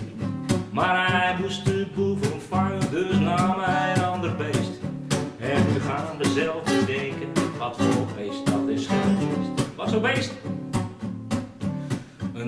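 Acoustic guitar strummed in a steady rhythm, with a man singing a Dutch children's song over parts of it.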